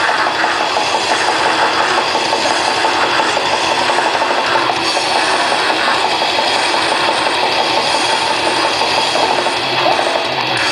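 Grindcore band playing live: very fast, dense drumming under a wall of heavily distorted guitar and bass, loud and continuous without a break.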